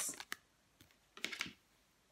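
Tarot cards handled over a table: a single light click, then a short run of faint card clicks and flicks about a second in.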